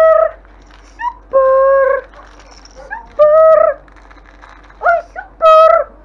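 Five-week-old German Shepherd puppies whining: about four high-pitched cries, each held steady for around half a second, with short rising yelps in between.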